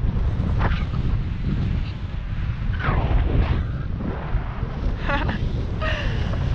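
Strong wind rushing over the microphone in flight, a steady low rumble that rises and falls a little.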